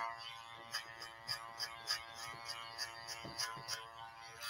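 Guarded electric hair clipper running with a faint steady buzz, with light ticks several times a second as it is flicked through the hair to blend a fade.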